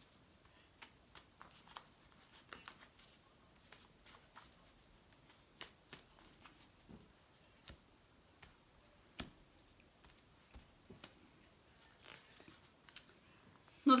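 A small deck of baralho cigano cards being shuffled by hand: faint, irregular clicks and flicks of the cards.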